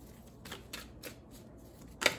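A tarot deck being shuffled by hand: faint, soft flicks of cards, a few a second.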